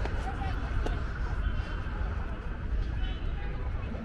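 Open-air ambience: faint voices of other people in the stone theatre, heard a few times, over a steady low rumble.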